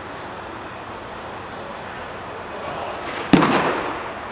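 A pitched baseball hitting its target with one sharp, loud smack about three seconds in, which echoes briefly.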